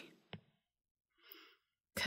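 Near silence in a pause of speech, with a faint click and then a short, soft breath from the speaker.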